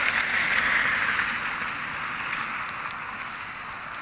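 A steady rushing noise, loudest in the first second and slowly fading over the next few seconds.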